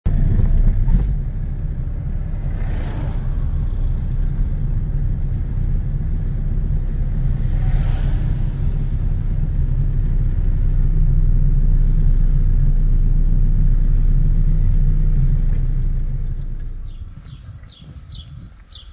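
A loud, steady low rumble that fades away near the end, with a few short high chirps as it dies down.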